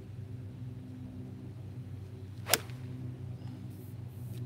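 Golf club striking a ball: one sharp crack about two and a half seconds in, over a steady low hum.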